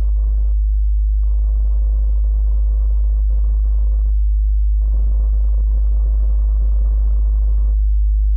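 A low sine tone near 51 Hz held steady throughout, with a grainy, hissing sustained instrumental sound above it. The grainy sound drops out briefly three times: about half a second in, around four seconds in, and near the end.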